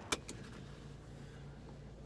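A sharp click, then a faint steady low hum inside a car's cabin.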